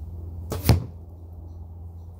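An arrow from a compound bow striking the target of hay bales: one sharp thwack about two-thirds of a second in, with a softer sound a moment before it.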